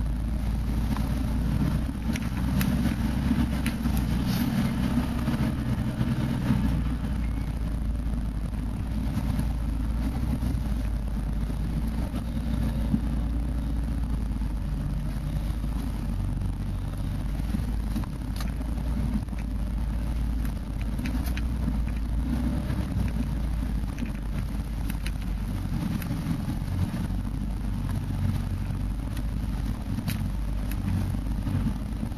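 A 4x4's engine running at low speed, heard from inside the cab as it drives over a rough, muddy woodland track, a steady low rumble with scattered short clicks and knocks.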